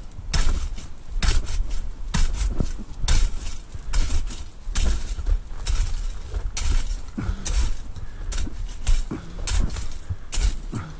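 Metal garden rake scraping wet soil and grit across concrete in repeated strokes, about one a second, its tines clinking and rasping.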